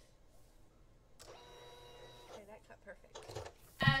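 A steady whine from a small electric motor, lasting about a second, followed by faint background voices.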